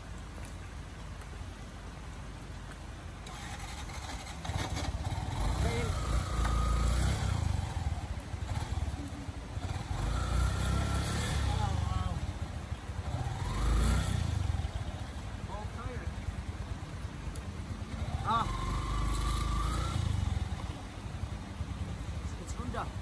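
Small motorcycle engine revving in repeated surges, several seconds each, as the bike is pushed out of a mud rut with its rear wheel bogged down.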